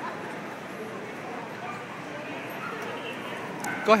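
Steady murmur of a crowd in a large hall, with dogs barking and whimpering among it. Near the end a single loud, short voice cuts through.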